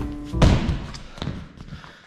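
A body landing from a backflip onto a thick gym crash mat: one heavy, deep thud about half a second in, followed by a lighter knock.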